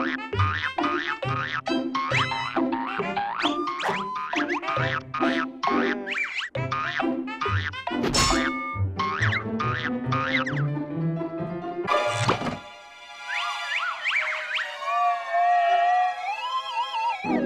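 Cartoon spring 'boing' sound effects for a kangaroo hopping, about two a second, each with a low thud, over music. Two louder sharp hits come about halfway and three quarters of the way through, and a wavering, theremin-like tone follows near the end.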